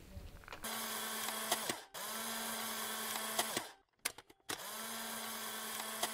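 A steady machine-like whir with a low hum, heard in three stretches of about a second and a half each. Each stretch starts and stops abruptly.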